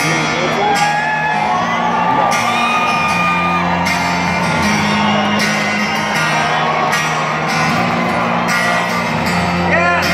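Live concert music filling a large arena: guitar and a singing voice holding long notes over steady low bass notes.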